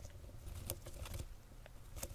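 Hamster rustling and scratching in shredded paper bedding inside a plastic carrier, close to the microphone: quiet, scattered ticks and crackles.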